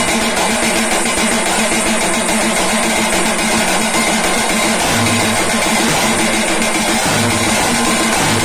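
A group of drums played with sticks in a loud, fast, continuous rhythm, with no break.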